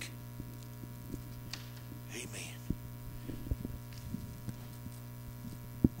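Steady electrical mains hum through the church's microphone and sound system, with a few soft knocks and one sharper thump just before the end from the handheld microphone being handled.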